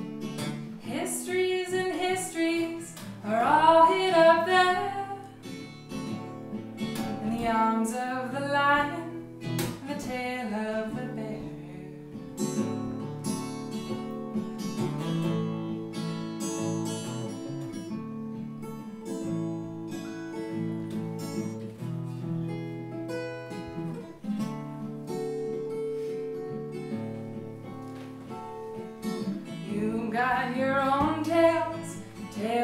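Steel-string acoustic guitar played with a capo, chords ringing and changing, with a woman singing a few phrases in the first ten seconds or so. After that the guitar plays alone.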